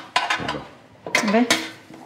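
Metal bowl and spoon clinking against the metal steamer basket of a couscoussier as couscous is poured in and spread out: a few sharp metallic clinks, two of them close together about a second and a half in.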